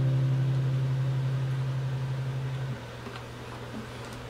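Classical guitar's final low bass note ringing out and slowly fading, then cut off suddenly about three seconds in, leaving faint room hiss.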